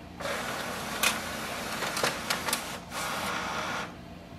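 Canon MAXIFY GX6021 scanner running a scan, drawing the page through its automatic document feeder. A steady mechanical whirr starts just after the beginning, with several sharp clicks along the way and a brief dip in the middle, and it stops just before the end.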